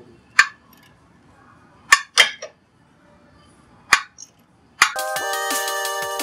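A wrench clinking against the steel of a car's front suspension as a nut is worked loose: half a dozen sharp, separate metallic clinks a second or so apart. Electronic music with a heavy beat comes in shortly before the end.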